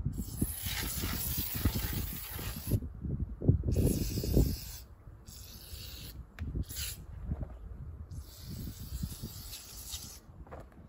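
Aerosol spray can hissing in about five bursts: a long one of nearly three seconds, then shorter ones, the last running on near the end. A low rumble runs underneath.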